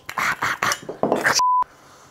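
A man's pained, strained cry while he twists a hot incandescent light bulb out of its socket, followed about one and a half seconds in by a short single-tone censor bleep.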